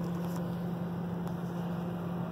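Steady low hum inside the cabin of a stationary 2013 Honda Fit, its engine idling.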